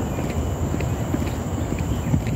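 Footsteps of a person walking on a path, soft irregular steps a few times a second over a steady low rumble on the microphone.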